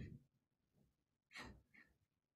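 Near silence on a video-call line, with a spoken word trailing off at the start and a faint, short breath about a second and a half in.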